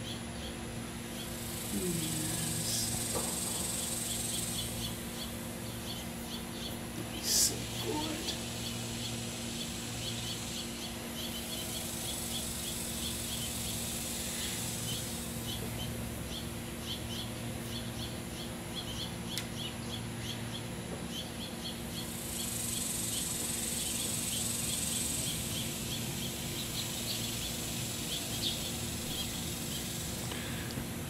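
Insects chirping outdoors in an even, continuous train of short high chirps, with a higher buzzing chorus that swells and fades three times. One sharp knock comes about seven seconds in.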